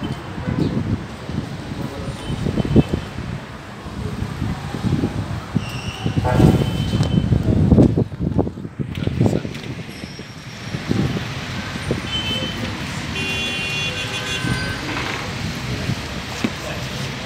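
Road traffic: vehicles running and passing close by, loudest a third to halfway through, with a few short high-pitched toots like horns. No explosion is heard.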